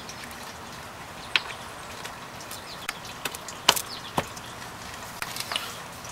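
A few light, sharp metal clicks as a hinge pin tool is handled and fitted onto the hinge pin of a Mercruiser sterndrive, over a faint steady background.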